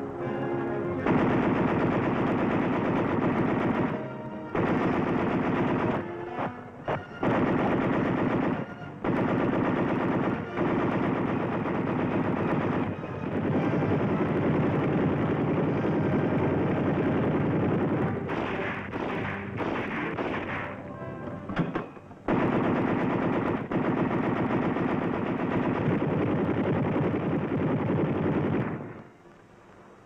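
.50-caliber machine guns firing in long bursts of rapid fire, broken by several brief pauses and stopping shortly before the end.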